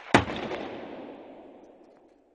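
A sharp crack, then a noisy rush that fades away to silence over about two seconds.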